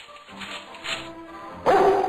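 A cartoon dog gives one short, loud bark near the end, over quiet background music.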